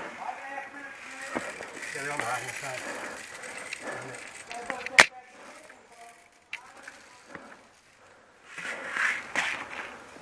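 Faint, unclear voices of nearby people, with one sharp snap about five seconds in that is the loudest sound, a smaller click a second and a half later, and a short burst of noise near the end.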